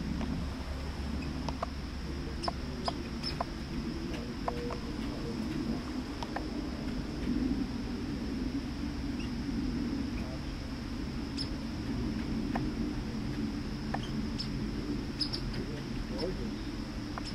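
A young red squirrel scolding with short squeaks and chirps at irregular intervals, over a steady high-pitched hiss and a low outdoor rumble.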